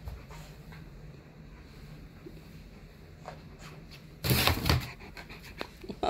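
Quiet room with a faint low hum. About four seconds in, a dog's loud, snuffling breath right at the microphone lasts under a second, followed by a few small clicks.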